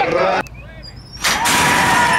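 Spectators at a horse race shouting and calling out, cut off abruptly less than half a second in. After a short lull comes a brief burst of noise, then voices again, one of them a long held call.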